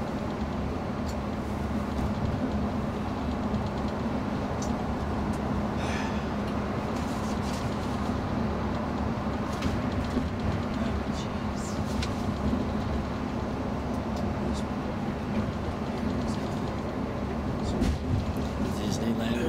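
Coach bus engine and tyre noise, heard from inside the cabin while cruising at motorway speed: a steady drone with an even low hum.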